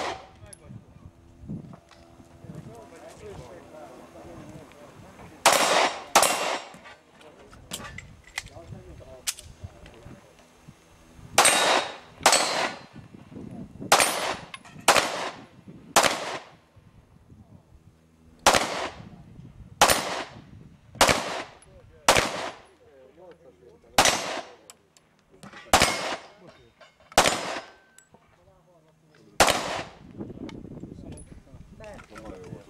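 Heckler & Koch P2000 pistol firing single shots at a practical-shooting stage. There are about fifteen sharp reports: a first pair about five and a half seconds in, then shots roughly one to two seconds apart.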